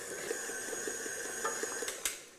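Chunks of meat frying in ghee and oil in a pot: a faint steady sizzle with light crackles and a thin high whine, cutting off abruptly just before the end.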